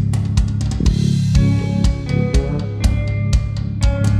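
Instrumental passage of a studio-recorded rock band track: guitar and bass over a steadily hit drum kit, with no vocals.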